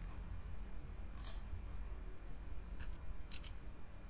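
A few sharp computer-mouse clicks: one about a second in, then a faint one and a quick double click near the end, over a low steady hum.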